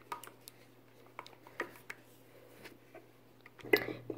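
Silicone spatula stirring thick glue-and-lotion slime in a glass bowl: faint scattered wet squishes and light taps, with a louder knock just before the end. A low steady hum runs underneath.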